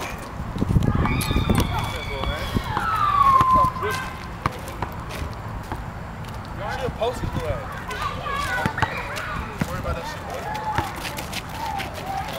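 Players' voices and shouts carrying across an outdoor basketball court, with sharp knocks of a basketball bouncing on asphalt. About three seconds in there is one long falling tone.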